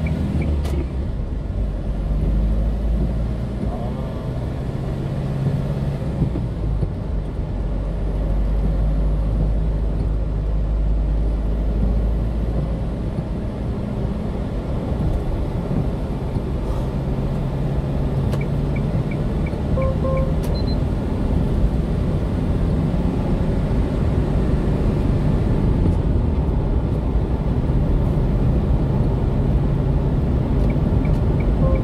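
Steady low engine and tyre rumble heard inside the cab of a small truck driving on the highway. Short runs of quick high beeps come twice, about 18 seconds in and at the end.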